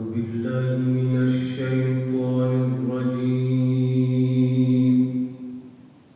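A man's voice chanting one long drawn-out phrase with few breaks, its pitch shifting slightly midway. It dies away a little after five seconds.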